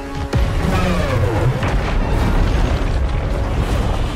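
Film soundtrack: music with a sudden heavy boom about a third of a second in, followed by a loud sustained rumble of crashing debris as a building is smashed.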